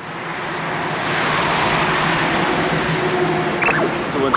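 Jet airliner flying low overhead: a loud, steady roar that builds over the first second and holds, with a low hum underneath.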